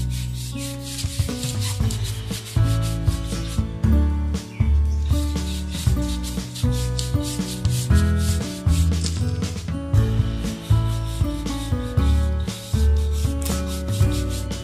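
Background music with a steady beat and bass, over the quick, repeated scratchy strokes of a hand applicator rubbing shoe polish into a rubber tyre sidewall.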